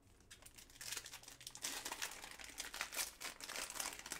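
Foil trading-card pack wrapper crinkling as it is handled and torn open by hand, a dense crackle that starts about a second in.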